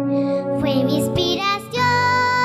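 A young girl singing a phrase into a microphone over held instrumental chords, which change near the end.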